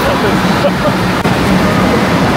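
Steady din of a crowded indoor water park: many people's voices and moving water blend into one continuous noise, with scraps of nearby talk in it.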